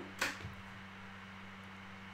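A brief rustle of die-cutting plates and cardstock being handled just after the start, then quiet room tone with a steady low hum.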